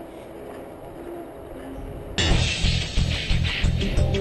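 Background rock music: a quiet, faint passage for the first half, then a loud section with a steady fast beat starts abruptly about halfway through.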